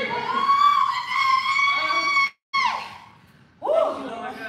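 A high-pitched voice holding one long note for about two seconds. It cuts off suddenly into a moment of silence, then gives a short note that falls in pitch. Another rising-and-falling vocal sound comes near the end.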